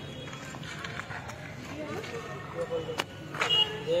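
Indistinct voices of people talking over a steady outdoor background hum, growing louder near the end, with a sharp click about three seconds in.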